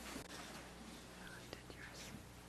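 Faint, off-microphone voices in a council chamber during a roll-call vote, over a steady low hum, with a couple of small clicks about a second and a half in.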